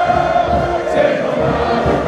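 A large crowd of carnival-goers singing together in chorus, loud and continuous, many voices overlapping.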